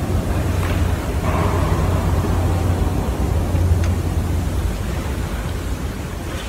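Steady background hiss with a low, constant hum: the room tone of the church recording, with no speech.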